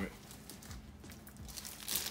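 Faint rustling and crinkling of packaging being handled, with a sharper crinkle near the end.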